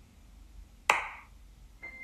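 A single sharp knock with a short ringing tail about a second in, over a quiet background. A high, held note begins just before the end.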